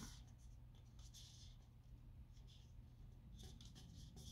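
Near silence: room tone with faint scratching and rubbing from hands handling an aluminium beer can, a soft scratchy patch about a second in and a few light ticks near the end.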